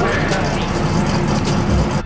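Drag race cars running at full throttle down the strip, with crowd voices mixed in.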